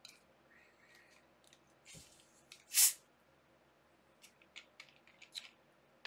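Quiet handling of drink bottles at a table, with one short, sharp hiss about three seconds in and a few light clicks near the end.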